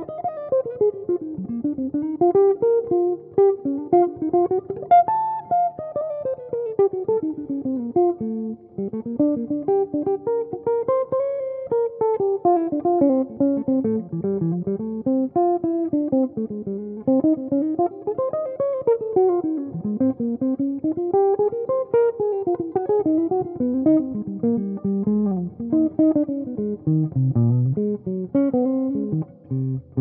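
Archtop jazz guitar played through a GLB guitar amp, improvising fast single-note lines that run up and down the neck in quick scalar sweeps, with low bass notes dropped in beneath.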